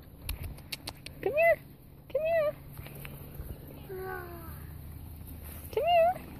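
Standard poodle puppy yipping: three short high yips, each rising then falling in pitch, the first about a second and a half in, the next half a second later and the last at the very end, with a fainter falling whimper in between. A few light clicks in the first second.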